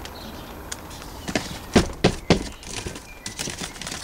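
Fingers working compost over seeds in small plastic pots set in a plastic tray: a handful of irregular light knocks and scrapes of plastic and compost, loudest just before and after the middle.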